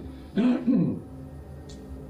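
A man clearing his throat in two quick parts, about half a second in.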